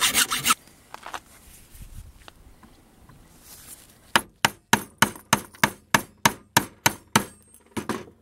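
Hacksaw strokes on a plastic castor-wheel tyre stop about half a second in. After a few quiet seconds, about a dozen sharp hammer blows land on a steel tool held against the plastic wheel, around three a second.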